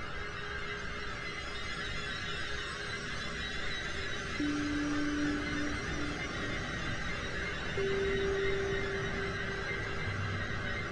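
Berlin School-style ambient electronic music: a steady synthesizer wash with slow single held notes, a low one entering about four seconds in and a higher one near the end.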